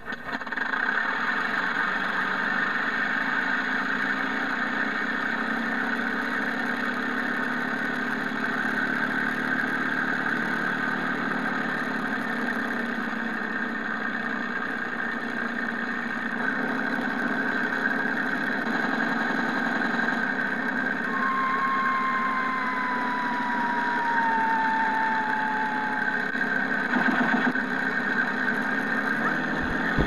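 Simulated P-51 Mustang piston-engine idle played through the model's Mr. RC Sound V4.1 speakers, steady while the propeller turns slowly on the ground. A thin falling whistle is heard about two-thirds of the way through, and the sound picks up in the last moments.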